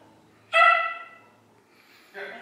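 Small white dog giving a single high-pitched bark about half a second in, falling slightly in pitch as it fades.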